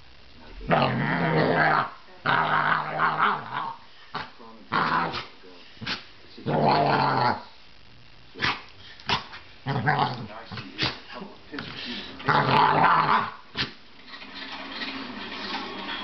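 Basset hound growling in play: a series of pitched, grumbling growls, each about a second long, with short sharp sounds between them.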